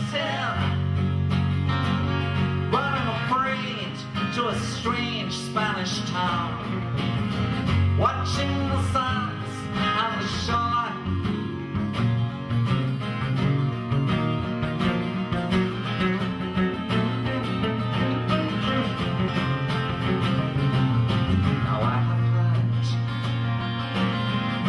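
Two acoustic guitars playing an instrumental passage of a folk song, strummed chords under a melody line that bends and slides through the first half.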